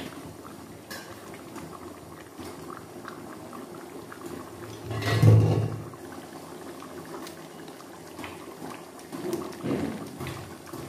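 A thin chicken, papaya and potato curry boiling hard in an open pan, its bubbling steady with small pops. A loud low thump comes about five seconds in.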